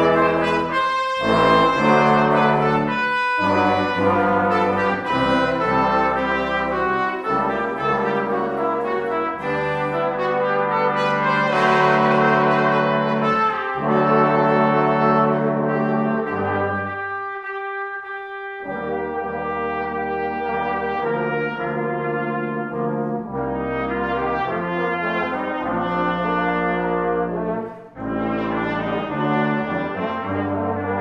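Brass quintet of two trumpets, horn, trombone and tuba, with pipe organ, playing a stately festive march in chords. About two-thirds of the way through, the low parts drop out for a moment, leaving the upper voices holding. There is a short break in the sound near the end.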